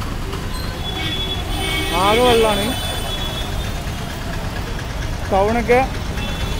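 Street traffic: a steady low rumble of vehicle engines, with a person's voice briefly about two seconds in and again near the end.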